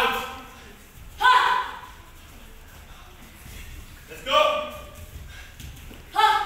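Two short, loud shouts, one about a second in and another about four seconds in: kihap yells from taekwondo sparring fighters as they attack.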